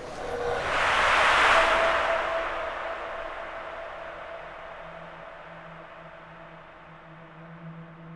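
Soundtrack sound design over closing credits: a wash of noise swells to a peak about a second and a half in, then fades away slowly. Low, steady drone tones come in under it from about halfway through.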